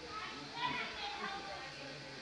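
Children's voices chattering and playing in the background, high-pitched and unclear.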